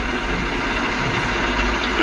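A steady low engine hum, like a vehicle idling, with an even background noise.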